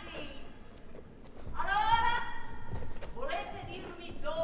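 A voice on stage calling out without clear words: one long drawn-out cry about halfway through, then a shorter one near the end.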